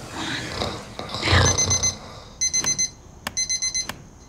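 Electronic alarm clock beeping: three groups of four quick, high beeps, about a second apart, starting a little over a second in.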